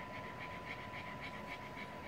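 A pug panting quickly, in soft even breaths about five a second. A thin steady tone hums faintly underneath.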